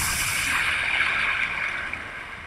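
Sound effect of a torpedo explosion against a ship's side: a loud, sustained rushing noise of blast and thrown-up water, easing off near the end.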